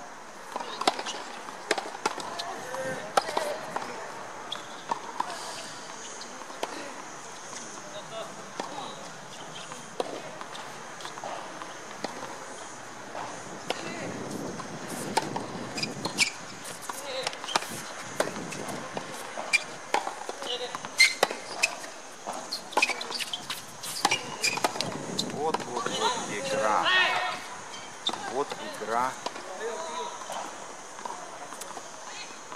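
Sharp pops of a tennis ball being struck by rackets and bouncing on a hard court, at irregular intervals throughout. A voice is talking in the background, mostly near the end.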